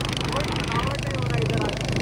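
Motorcycle engine running steadily at road speed with a low, even hum, under a voice talking indistinctly.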